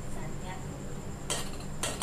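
Cooked rice being tipped from a steel strainer back into a steel pot, with metal scraping and two sharp metal knocks near the end.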